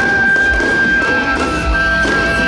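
Temple-procession music: a high, long-held wind melody over low, irregular drum-like thumps.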